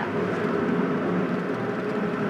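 Steady road and engine noise heard inside the cabin of a moving car, with a faint steady hum running through it.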